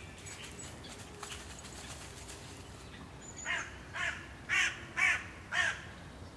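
A crow cawing five times in a quick, even series, about two calls a second, starting a little past the middle.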